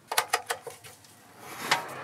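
Sharp clicks and knocks of hands working latches and fittings on a camper van: a quick run of about five in the first second, then a louder click near the end.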